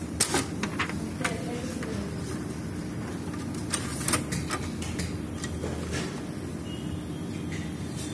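Light clicks and knocks of paper and plastic printer parts being handled as a sheet is fed into the front bypass slot of a Kyocera laser printer, a cluster near the start and another about four seconds in, over a steady background hum.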